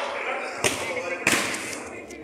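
A football struck twice with sharp smacks, about two-thirds of a second apart, during small-sided play on artificial turf, over players' shouting voices.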